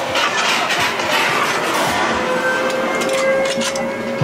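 Loud haunted-maze soundtrack: a dense noisy mix of music and effects with many short hits, and a steady held tone coming in about halfway through.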